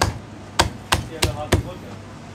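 Heavy cleaver chopping through chicken onto a thick end-grain wooden block: five sharp chops in quick succession, the last four about three a second.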